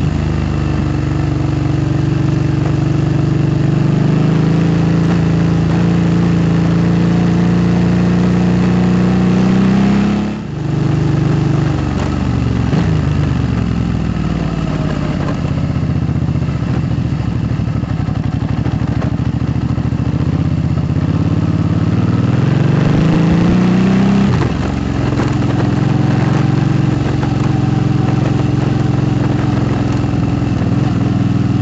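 A 2008 Suzuki V-Strom 650 motorcycle's V-twin engine running through a Delkevic aftermarket exhaust while riding a dirt track. The engine note climbs steadily for about ten seconds, then dips sharply. It wanders for a while, then climbs again and falls off abruptly about two-thirds of the way through.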